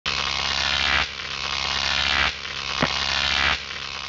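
Loud, harsh electronic buzzing that shifts in character in sections about every second and a quarter, with a brief sharper sound about three-quarters of the way through.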